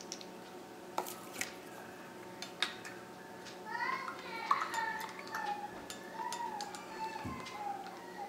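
Light clinks of a wooden skewer against a glass measuring cup as water is stirred, a few scattered taps. From about halfway in, a high, wavering voice-like sound runs over the clinks and is the loudest thing heard.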